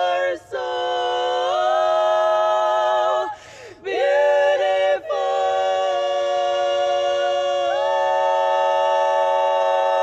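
Women's barbershop quartet singing a cappella in close four-part harmony. The chords change in steps, with short breaths about half a second in and again around the middle, then build into a long, held final chord near the end.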